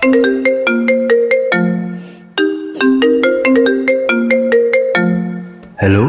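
Marimba-style mobile phone ringtone melody, short struck notes repeating the same phrase several times with brief breaks, played loud as part of the dance's music.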